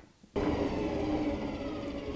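Coal forge fire under forced air: a steady rush of air with a faint motor whine from the forge blower. It starts abruptly about a third of a second in, after a moment of near silence.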